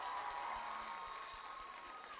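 Audience applauding, the scattered clapping thinning out and dying away. A thin steady tone runs underneath the clapping.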